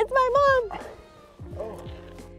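A woman's excited, wavering squeal lasting about half a second, the loudest sound, over soft background music with sustained notes; a short, quieter vocal sound follows about a second and a half in.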